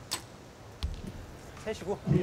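Compound bow shot: a sharp crack as the bow is released, then about three quarters of a second later a dull thud as the arrow strikes the target.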